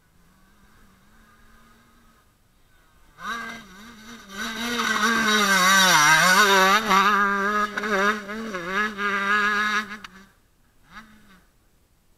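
Husqvarna motocross bike's engine, faint at first, then loud from about three seconds in as the bike rides close past through a dirt corner, the revs rising and falling repeatedly with the throttle. It drops away about ten seconds in, with one more brief faint rev near the end.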